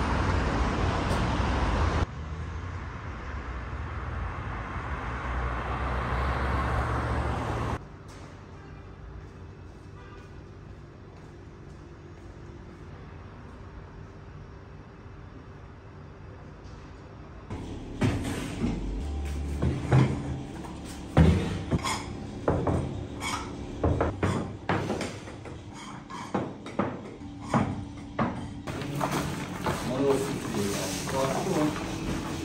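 Street traffic noise at first, then after a cut a quieter room with a faint steady hum. From a little over halfway through, a run of sharp, irregular knocks and clatters of kitchen work.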